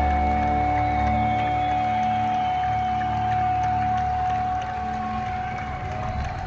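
Live rock-concert music in an arena: a held chord of steady sustained notes over a low drone, slowly fading as the song ends.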